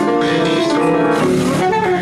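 Freely improvised music: an alto saxophone playing held notes over prepared piano, several pitches sounding at once and moving every half second or so.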